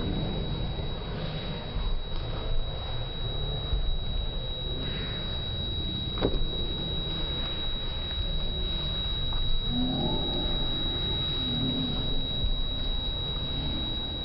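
Slowed-down sports-hall sound: a low rumble with a steady thin high whine, one sharp click about six seconds in, and a few deepened, drawn-out voice-like sounds a little after ten seconds.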